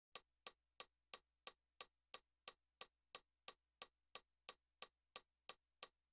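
Metronome clicking steadily at about 179 beats per minute, close to three quiet clicks a second, counting in the tempo before the piano comes in.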